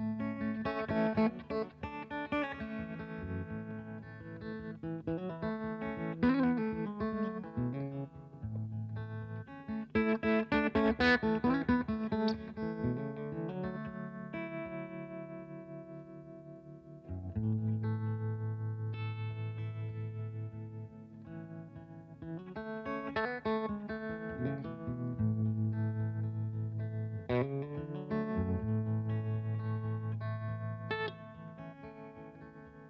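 Telecaster-style electric guitar played in an experimental, free style: picked notes and chords ringing over a low sustained note that drops out for a few seconds midway and then returns. There is a burst of rapid picking about ten seconds in.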